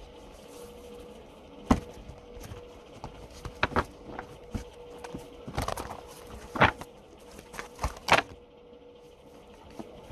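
Tarot cards being handled between draws: scattered sharp taps and clicks at irregular moments, about half a dozen, over a faint steady hum.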